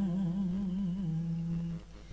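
A chanter's voice in Vietnamese ngâm poetry chanting holds one long drawn-out note, wavering in pitch for about the first second and then steady, before fading out near the end.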